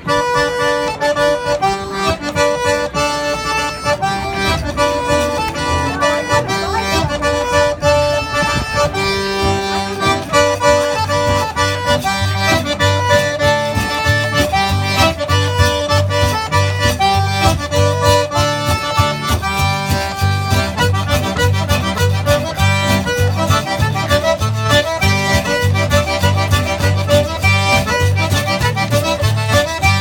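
Zydeco band playing a fast two-step: an accordion leads with rapid runs of notes over acoustic guitar, and a steady low beat joins about ten seconds in.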